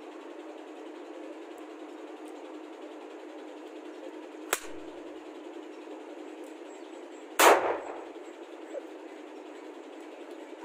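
M4-style rifle: a sharp metallic click of the action about four and a half seconds in, then one loud, sharp metallic bang with a brief ring-out about three seconds later, and a small knock after it.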